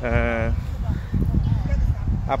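A single short vocal call, held for about half a second with a slight waver at the very start, followed by a steady low rumble of wind on the microphone.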